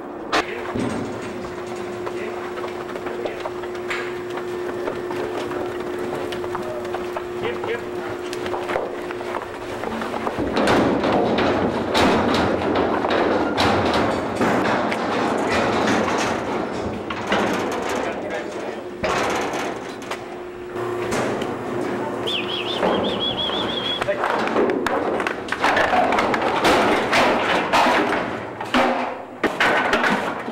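Cattle being worked through a steel handling chute: repeated knocks and clangs of the metal panels and gates over a busy stretch of noise, with handlers' voices, busiest in the middle and again near the end.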